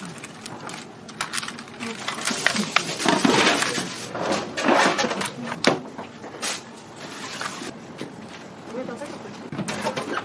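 Kitchen handling noise: irregular rustling and light clicks as gloved hands move paper-wrapped sandwiches in paper liners and pick fruit from a plastic tub.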